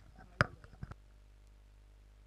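A sharp click about half a second in, with a few softer clicks around it, then near silence.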